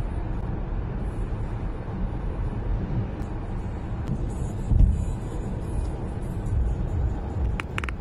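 Steady low road rumble of a car driving at motorway speed, heard from inside the cabin, with one brief louder thump about five seconds in.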